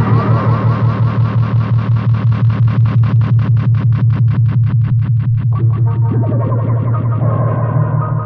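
Lo-fi electronic synthesizer music: a steady pulsing low drone under a fast, even run of clicks, about eight to ten a second, with swooping pitch glides coming in over the last couple of seconds.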